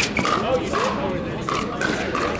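Pickleball paddles striking a hard plastic ball in a quick exchange at the net: a couple of sharp, hollow pops, one at the start and one near the end, over a bed of background voices.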